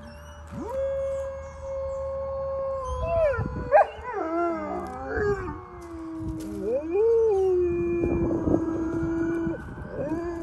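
Several German shepherds howling together: long, overlapping howls that hold a note and then slide up and down in pitch, with one sharp loud yelp about four seconds in. The howling is set off by passing emergency vehicles.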